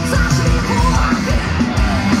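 Live rock band playing loud through a festival PA, heard from the crowd: a fast drum beat of about four strokes a second under vocals.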